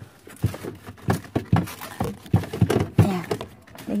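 Groceries being set into a refrigerator: a run of about a dozen irregular short knocks and thuds as items go onto the shelves and against the fridge.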